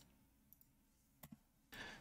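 Near silence with two faint, short clicks from a computer keyboard about a second in.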